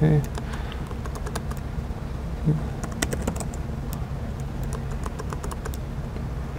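Typing on a laptop keyboard: irregular key clicks in quick clusters, over a steady low hum. A brief low sound comes at the start and again about two and a half seconds in.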